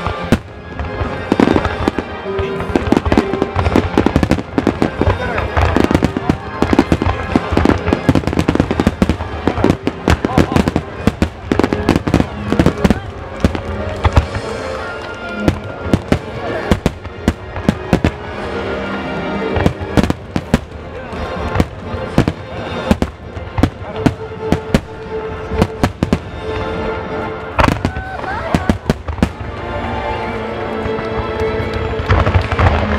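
Japanese fireworks display in a rapid barrage: aerial shells bursting one after another, sharp bangs and crackles several a second, with a song with a singing voice playing over it.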